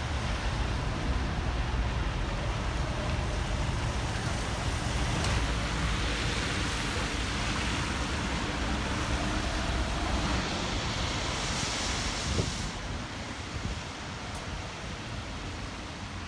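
Traffic sound at a bus terminal: city bus engines rumbling steadily at idle and low speed, with road noise from the wet pavement. A brighter hiss swells and drops away about 13 seconds in.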